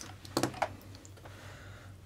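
A few small, sharp clicks and taps of plastic RC buggy steering parts handled by hand, with two clicks close together about a third and a half second in. The tie rods are being popped off the front hubs.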